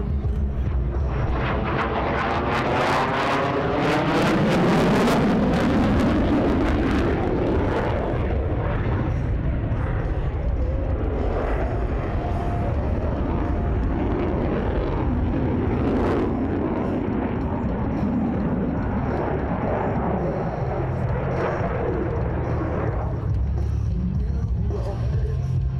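F-16 fighter jet's engine roaring as it flies past overhead, loudest about five seconds in. In the first few seconds the roar has a sweeping, phasing whoosh to it.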